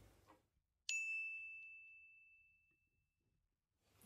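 A single high, bell-like ding, struck once about a second in and ringing away over about two seconds, with silence around it: a chime effect marking a title card.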